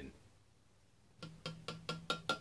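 Glass beer bottle glugging as the last of the homebrew, with its yeast sediment, is poured into a glass. A quick run of glugs, about five a second, starts a little over a second in.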